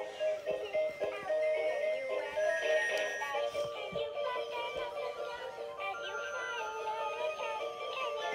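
Plush singing elephant toy playing an electronic song, with a synthesized voice singing the melody.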